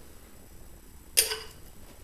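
A metal serving spoon clinks once, sharply, against glass a little past a second in, while sauce is spooned from a jar into a glass mixing bowl.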